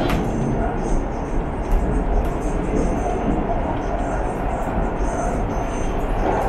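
Interior running noise of a KTM Class 92 electric multiple unit at speed: a steady rumble of wheels on rail and car body, with a sharp click near the start.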